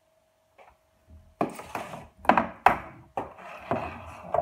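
A short hush, then five or six sharp knocks and clunks of metal food tins being handled and set down on a hard surface.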